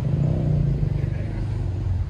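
A motor vehicle engine running steadily, a low hum with no revving.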